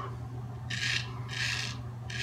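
Straight razor scraping stubble through shaving lather under the chin: two short rasping strokes about a second in, roughly half a second apart.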